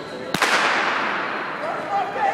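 Sprint start signal: one sharp crack about a third of a second in, ringing out in a long echo through a large indoor hall as the runners leave the blocks.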